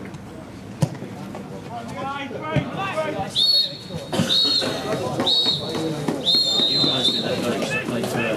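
A football kicked once with a sharp thump about a second in, then a referee's pea whistle blown in four shrill blasts, the last one longest: the full-time whistle. Players' shouts sound around them.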